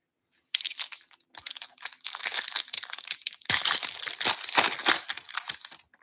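Foil wrapper of a 2021-22 Upper Deck Ice hockey card pack crinkling and tearing as it is opened, a dense crackle that starts about half a second in and stops just before the end.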